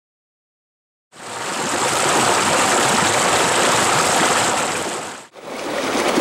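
Silence for about the first second, then a small rocky creek running and splashing over stones fades in. The water sound breaks off briefly about five seconds in and then resumes.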